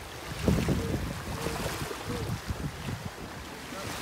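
Wind buffeting the microphone outdoors: an uneven low rumble that rises and falls throughout.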